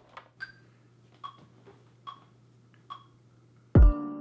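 Software bell synth played one note at a time from a MIDI keyboard: four soft, short notes evenly spaced a little under a second apart, over a faint low hum. Near the end a much louder beat cuts in, with a heavy kick drum and sustained chords.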